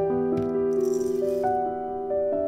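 Soft piano music, with a brief rattle from about half a second to just past one second in as dried omija (schisandra) berries are poured from a metal measuring cup into a ceramic bowl.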